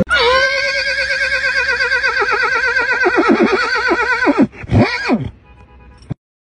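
A long, high, wavering squeal from an old station wagon as it rolls along, sounding like a horse whinnying. The squeal drops in pitch at the start, warbles for about four seconds, then slides down. A second short squeal rises and falls about five seconds in.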